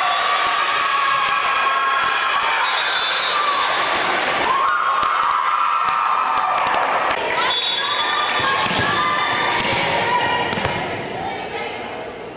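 Volleyball players and spectators cheering and shouting in a gym right after a point, with many overlapping held calls. Scattered sharp knocks of ball or feet on the hardwood floor run through it, and the cheering dies down near the end.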